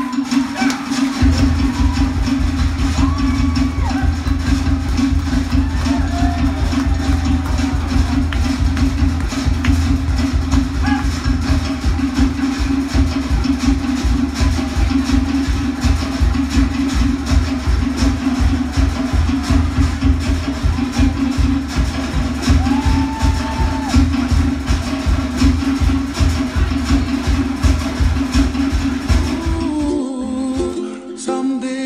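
Live Polynesian show music: fast, steady drumming with wooden percussion over a deep bass line, which comes in about a second in.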